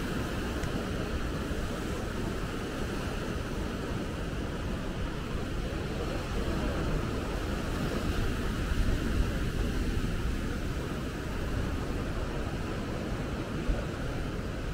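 Ocean surf breaking over a rocky shore, a steady wash of wave noise, with wind rumbling on the microphone.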